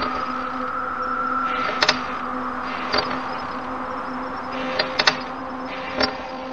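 Eerie sound-effect ambience: a steady low drone of held tones over a faint hiss, with a handful of sharp clicks or knocks at irregular moments, a couple of them close together near the end.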